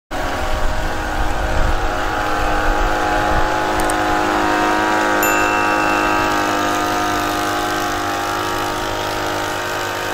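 Small engine of a backpack power sprayer running steadily at a nearly constant pitch while disinfectant is sprayed.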